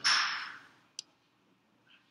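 A short breathy hiss that fades within about half a second, then a single sharp click about a second in, such as a laptop trackpad click while browsing folders.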